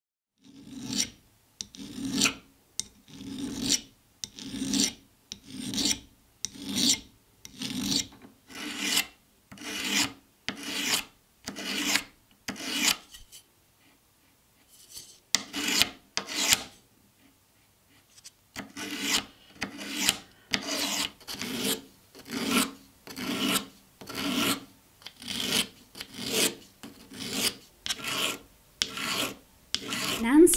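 Hand file rasping along the edge of a thin silver sheet in steady back-and-forth strokes, about one a second, with a quieter, patchier stretch of lighter strokes in the middle.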